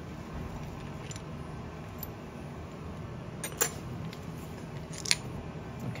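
A few light metallic clicks and clinks of small steel instruments and adapter parts being handled, over a steady low hum. The clicks are faint at first, with a stronger pair about halfway and a sharp one near the end.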